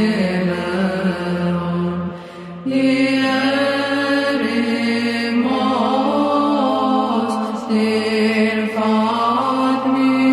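Orthodox Byzantine chant: voices singing a slow, drawn-out melody over a held drone (the ison), with a short breath-break about two seconds in before the line resumes on a new pitch.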